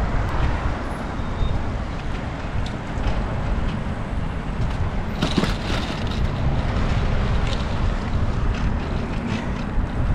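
Wind rushing over the microphone of a camera on a moving bicycle, mixed with the steady noise of road traffic running alongside. A brief louder rush with a click comes about five seconds in.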